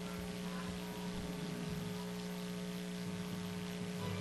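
A steady electrical hum and buzz, several even tones held without change: mains hum on the audio track.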